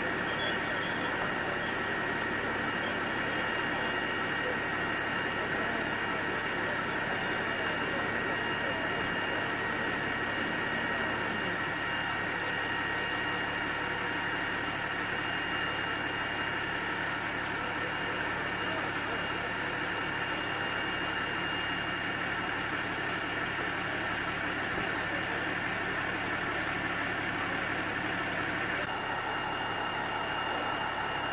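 Engine running steadily, a continuous drone with several constant tones; a low tone drops out about eleven seconds in.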